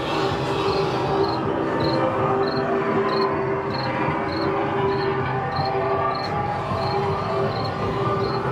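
Haunted-maze ambient soundtrack over speakers: a dense drone with a held mid-pitched tone and fainter sustained tones, and a short high chirp repeating evenly about every 0.6 seconds.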